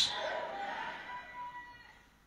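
The tail of a man's shout through a microphone and PA, ringing on in a hall and fading away over about two seconds.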